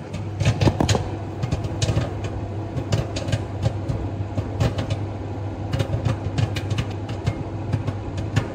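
Popcorn popping in a running microwave: a steady low hum with many irregular sharp pops throughout.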